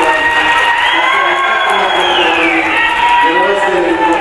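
A crowd cheering and shouting, with one long high-pitched cry held over it that rises about a second in and falls away past the middle.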